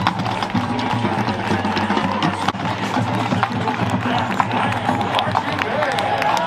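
A college marching band playing on the field, with many sharp drum taps, over the steady chatter of a stadium crowd.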